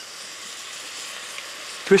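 Pan of sauerkraut over stewed carrots and onions sizzling steadily, with a little chicken stock just poured in. A brief click at the very start.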